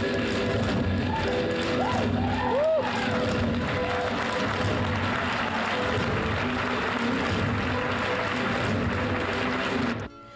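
Loud, steady live band music in a hall full of people, with a few short rising-and-falling calls over it about two to three seconds in.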